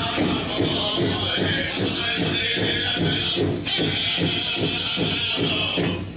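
Pow wow drum and singers: the big drum beaten in an even pulse of about three beats a second, with high voices held over it that break off briefly near the middle.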